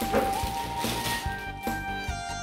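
Background music: a held melody note that steps up in pitch partway through, over a steady low beat.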